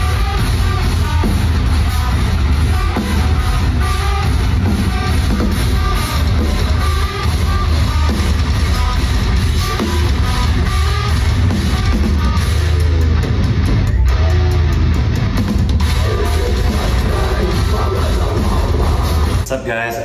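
A heavy metal band playing live and loud, with electric guitar and drum kit, heard from the balcony of the hall. It cuts off suddenly near the end.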